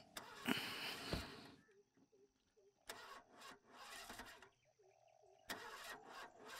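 A car's starter cranking the engine in several short attempts that fail to start it.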